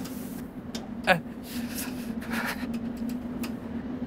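A steady low hum, with a few faint knocks and a man's short 'uh' about a second in.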